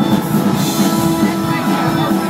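Live rock band playing at full volume: a drum kit driving the beat under sustained Hammond organ chords and guitar.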